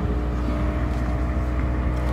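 Car driving, heard from inside the cabin: a steady low rumble of engine and road noise with a faint steady hum.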